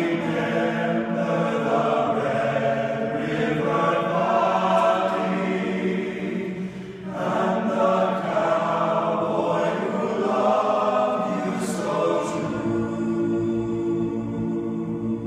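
A choir singing sustained chords, with a brief break between phrases about seven seconds in.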